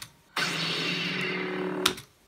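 Film trailer soundtrack from a screen's speakers: a lightsaber ignites and hums under a sustained music swell. Near the end a sharp click cuts it off as the video is paused.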